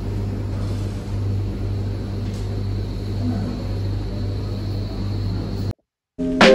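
Commercial tumble dryers running in a laundry room: a steady low hum and rumble. It cuts off abruptly near the end.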